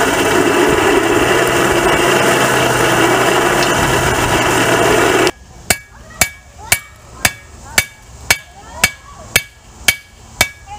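A hand-cranked cast-iron forge blower runs steadily, pushing air into the coal fire. About five seconds in it gives way to a hammer striking hot iron on an anvil, about two blows a second, each with a short ring.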